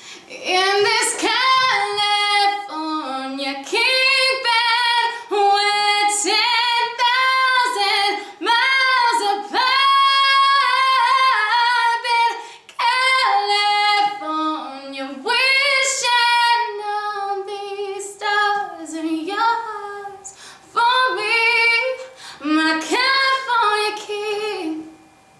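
A woman singing solo and unaccompanied, in phrases of long held notes that slide between pitches, with short breaths between phrases.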